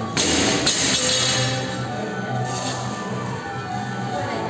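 Barbell loaded with rubber bumper plates dropped onto a gym floor: it lands just after the start and bounces once about half a second later. Background music plays throughout.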